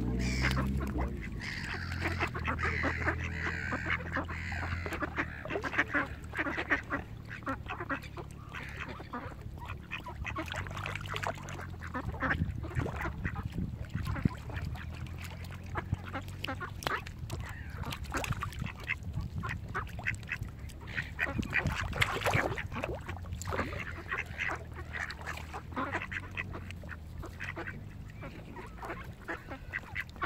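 A flock of mallard ducks quacking and calling close by, many short calls repeated over and over.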